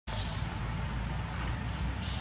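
Steady low rumble with hiss: outdoor background noise, with no distinct event standing out.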